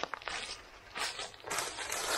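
Faint footsteps rustling and crunching in dry leaf litter on the forest floor, in a few short bursts.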